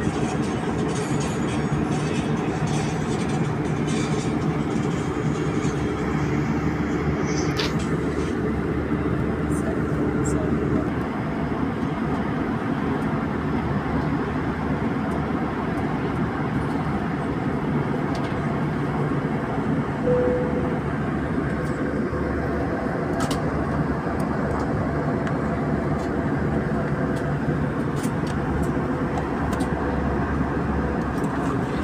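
Steady drone of an airliner's turbofan engines and airflow heard inside the passenger cabin in flight, with a low steady tone that stops about eleven seconds in.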